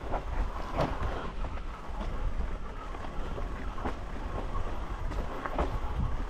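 Mountain bike rolling fast down a rough, rocky trail: a steady rumbling clatter of tyres and rattling bike parts over the ground, with a few sharper knocks.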